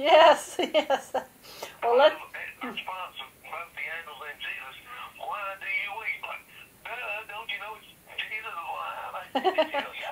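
People talking over a telephone-quality call line, voices thin and cut off in the treble, with short gaps between phrases.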